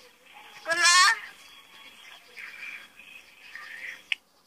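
A high-pitched voice giving a short, wavering, rising cry about a second in, followed by quieter voice sounds.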